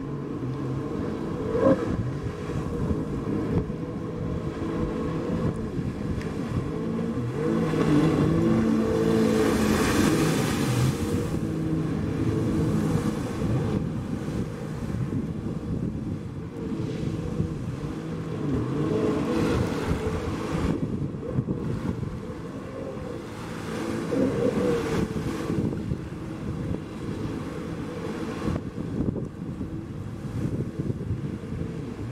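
Jet ski engine running hard, its pitch rising and falling as the rider carves turns, loudest about ten seconds in, with rushing water and wind on the microphone.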